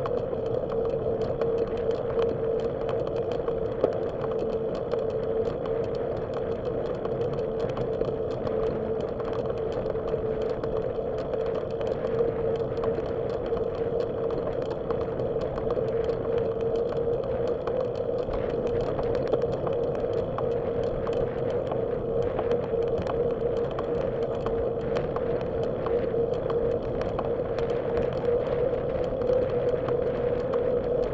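Bicycle rolling along a paved path, heard from a bike-mounted camera: a steady hum with hiss and faint rattling ticks from the ride.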